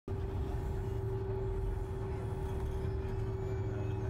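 A steady low rumble with one constant humming tone held above it, starting abruptly at the very beginning.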